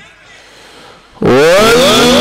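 A low crowd murmur, then about a second in a man's amplified voice breaks in loudly, sweeping up in pitch and settling into a long held note as he begins a chanted Quran recitation (tajwid) over loudspeakers.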